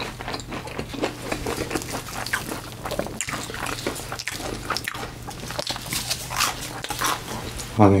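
Close-miked eating: a deep-fried creamy mozza ball being chewed, with many small crunches and wet mouth clicks, over a steady low hum.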